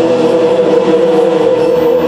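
Gospel singing by a vocal group and choir, holding one long steady note.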